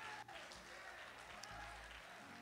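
Faint applause from a congregation.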